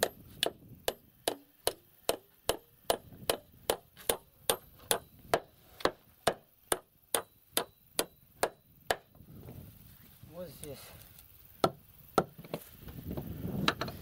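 Hand hammer striking in a steady run of about two to three blows a second, each with a short ringing edge, which stops about nine seconds in. Two more blows come a few seconds later. The hammering drives hay and wool into the gaps along the edge of a timber sluice to seal it against water.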